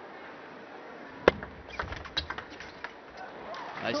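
Table tennis ball and rackets in play: one sharp crack of the ball off a rubber-faced racket about a second in, then a quick run of lighter ball clicks, hits and bounces on the table, over a low steady arena hum.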